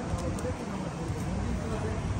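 Indistinct background talking over a steady low rumble, with two faint metallic clicks a fraction of a second in from the links of a loose motorcycle chain being handled.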